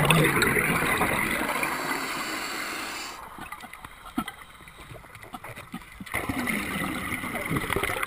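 Scuba diver's regulator exhaust bubbling right by the head-mounted camera. One long exhalation fades out about three seconds in, then a quieter breathing pause with small clicks, and the next exhalation's bubbling starts about six seconds in.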